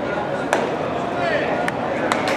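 A sharp knock of a baseball being played, about half a second in, and a fainter one later. Ballpark crowd chatter runs underneath.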